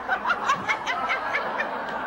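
A woman laughing in a run of short, quick bursts, about five a second, that trail off near the end.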